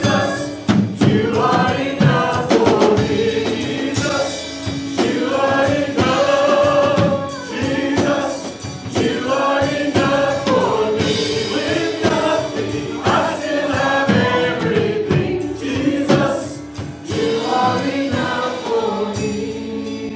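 Live contemporary worship band: a woman singing lead with a male voice alongside, backed by drums, bass guitar and keyboard, in held, flowing sung phrases over a steady beat, with the lyric 'Jesus, you are enough for me'.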